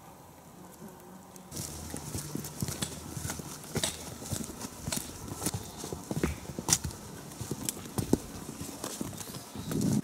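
Footsteps of a hiker in boots on a dry dirt and stony trail, a step about every half second to second, starting about a second and a half in.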